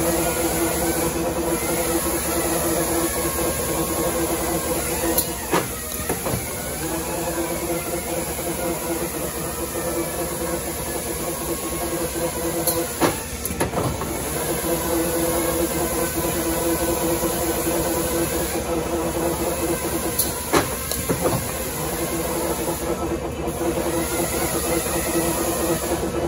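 Electric coil winding machine running steadily, its spinning winding head drawing copper magnet wire into motor coils, with a steady hum. It is broken three times by a short dip and a click.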